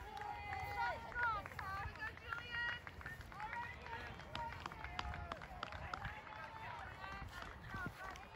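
Several young people's voices talking and calling at once, overlapping and too indistinct to make out, with scattered soft footfalls of runners on grass.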